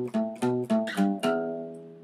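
Acoustic guitar playing a picked rock riff, single notes about three or four a second, ending on the open low E string, which rings and fades away over the last second.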